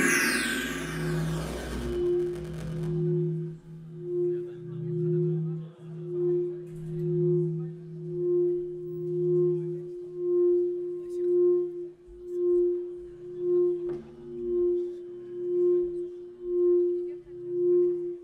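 Music: a loud dense swell with falling high sweeps, then a low electronic tone pulsing about once a second over a quieter lower drone.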